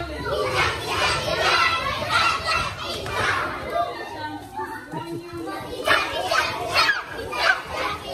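A crowd of young schoolchildren chattering and shouting all at once in a classroom, with a few louder shouts about six to seven seconds in.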